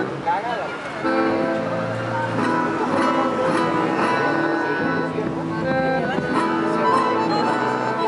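Traditional Argentine folk music played live on acoustic guitar and bandoneón, with a bombo legüero drum, as a steady, continuous ensemble.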